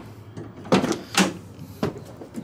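Rear cargo door of a Ford Transit van being unlatched and swung open: three sharp metal clunks about half a second apart.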